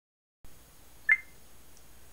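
A single short, high electronic beep about a second in, over faint background hiss.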